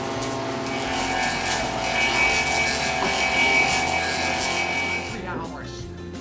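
A clog-carving copying lathe cutting a wooden clog, a steady whine over a harsh grinding of cutter on wood, which stops abruptly about five seconds in.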